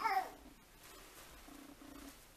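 A toddler's whiny vocal protest, a drawn-out "no" sliding in pitch and trailing off in the first half second, then quiet.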